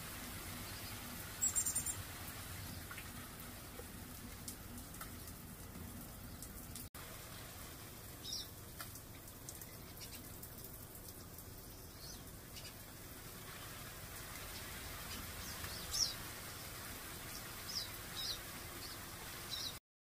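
Garden sprinkler spray hissing steadily, with short high bird chirps scattered through; the loudest come about a second and a half in and again about sixteen seconds in.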